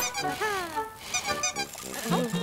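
Cartoon background music with sound effects: a sharp click at the start, then a falling tone about half a second in.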